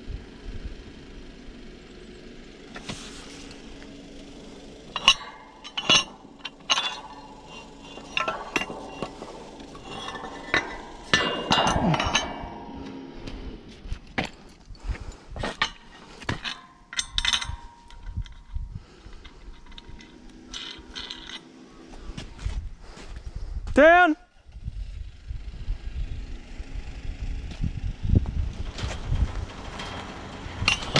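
Steel pipe clamp and galvanised drop pipe clinking and knocking as the pump column is handled at the bore head, a run of sharp metal strikes in the first half, over a vehicle engine idling steadily.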